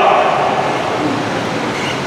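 A steady rushing noise with no speech and no distinct events, easing off slightly toward the end.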